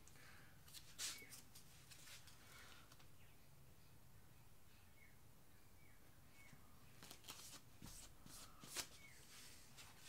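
A few short, faint scrapes of plastic spreaders rubbed against each other and against the canvas edge, wiping off wet acrylic paint. The scrapes come about a second in and again near the end, the loudest just before the end.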